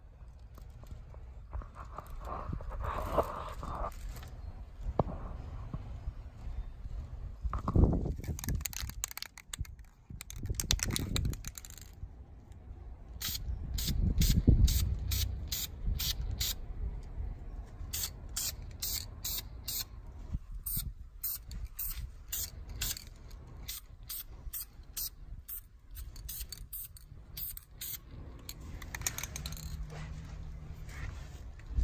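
Aerosol can of high-temperature red spray paint being worked over a brake caliper. Through the second half it gives a run of short, sharp, evenly spaced strokes, about two a second, with a few low thumps earlier on.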